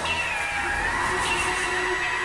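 Novation Supernova II synthesizer, processed live through effects, playing a high tone that glides down over the first second and then holds, over a low drone and a quieter mid-pitched note.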